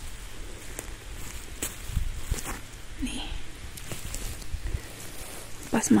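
Footsteps over a dry forest floor of pine needles and twigs: scattered light crackles and snaps as someone walks up to a spot on the ground.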